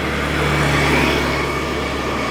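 A motor vehicle going past: a low engine hum and tyre hiss that grow to a peak about a second in and then ease away.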